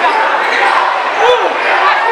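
A basketball dribbled on a hardwood court with sneakers squeaking during play, over a steady murmur of crowd voices.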